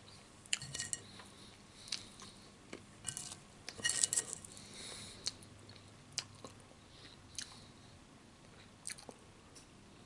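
A person chewing and biting food, with irregular crisp crunches that come thickest around four seconds in and thin out after that.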